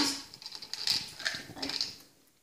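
Jelly beans rattling and clicking in a small glass jar as they are picked out by hand, with brief faint vocal sounds from a child.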